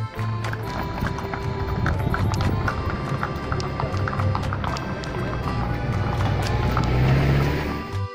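Hooves of a small herd of donkeys walking on a paved street, many irregular hoofbeats, getting louder toward the end, with music playing over them.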